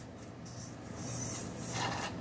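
Soft sipping of a drink from a stemmed glass, growing a little louder near the end, over a faint steady low hum.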